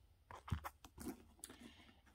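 Faint rustling with a few light taps and clicks as small coated-canvas and leather pouches are handled and set down by a tote bag.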